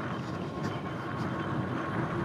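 Fat-tire electric bike rolling along a dirt trail: a steady rolling noise with no distinct knocks or changes.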